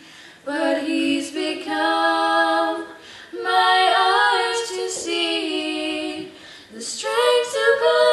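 Girls singing a hymn a cappella in close harmony, held notes in several phrases with short breaks for breath between them, in a room with some echo.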